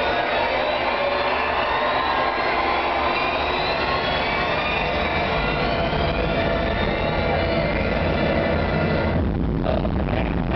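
Loud arena show-opening build-up: a dense wash of rising tones over crowd noise. A deep bass rumble joins about halfway, and the sound breaks off abruptly near the end, just before the electronic music starts.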